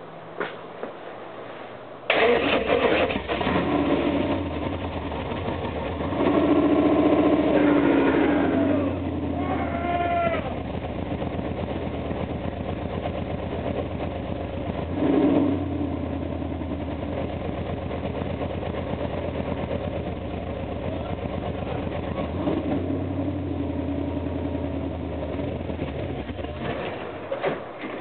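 A car's V8 engine catches about two seconds in and runs at idle, with its speed raised for a couple of seconds twice. It dies on its own just before the end, a stall.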